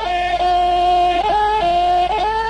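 A Khmer song: a singer holds long, steady notes that step up and down in pitch a few times, over musical accompaniment.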